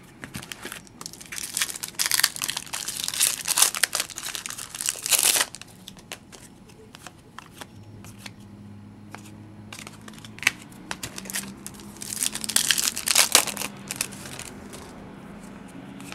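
Foil wrappers of hockey card packs crinkling and tearing open. There are two loud bouts of rustling, one from about two to five seconds in and another around twelve to thirteen seconds, with quieter handling between them.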